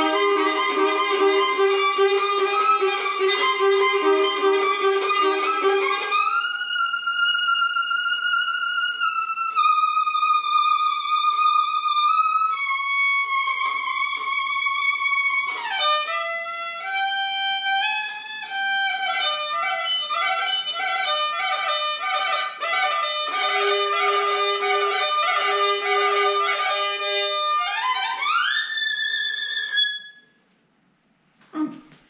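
A 1920 violin played solo by a player who is out of practice: two-note chords with quick repeated bow strokes, then at about six seconds a slower melody of long held notes with slides between them, growing busier about halfway, and a slide up to a high held note near the end.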